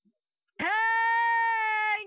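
A long, loud yell in a high, put-on woman's voice, held on one steady note for about a second and a half, starting about half a second in and cutting off at the end: a drawn-out shout calling for someone in another room.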